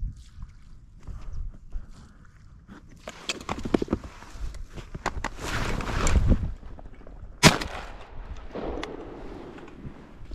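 Dry marsh grass and blind cover rustling as a hunter moves and swings a shotgun up, then a single shotgun shot about seven and a half seconds in, fired at a small diving duck, a ring-necked duck.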